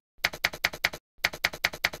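Typewriter keystroke sound effect: rapid clacking key strikes, about six a second, in two runs with a brief pause near the middle, matched to text being typed onto the screen.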